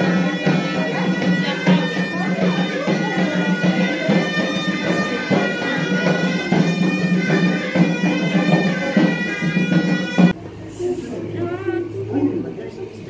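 Moroccan Issawa music: ghaita shawms playing a loud, reedy melody over a steady low note, with frame drums. It cuts off suddenly about ten seconds in.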